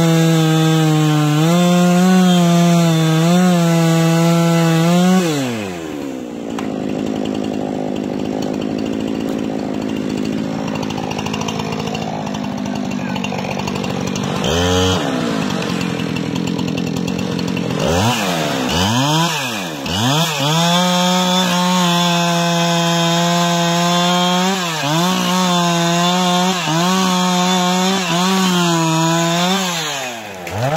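Two-stroke chainsaw cutting into a pine trunk at full throttle, then dropping to idle about five seconds in. It is blipped once, revved back up about eighteen seconds in and cuts again to near the end, its pitch dipping repeatedly as the chain bogs in the wood.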